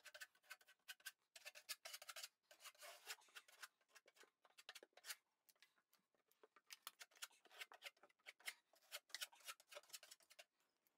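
Faint, quick clicking and scraping of hand sealing work: a caulking gun laying sealant along a seam of foam backer board and a putty knife smoothing sealant over the board. The sounds come in dense runs at the start and near the end, with fewer in between.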